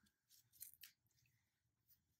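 Near silence, with a few faint, brief rustles of a ball of wool yarn and its paper label being turned in the hands.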